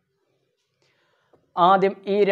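Near silence for about a second and a half, then a man's voice starts speaking.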